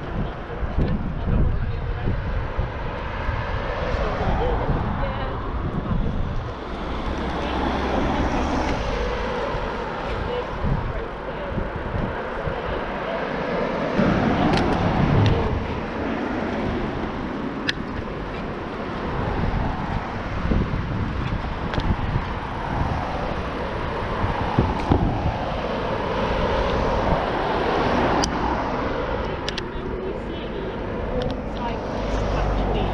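Wind noise on the microphone of a camera on a moving bicycle, with road traffic passing alongside and a few brief clicks.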